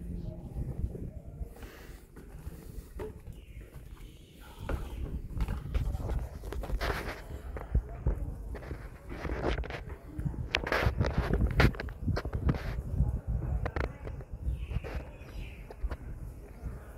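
Wind buffeting a phone microphone in irregular gusts, heaviest from about five seconds in, with scattered knocks and clicks through it.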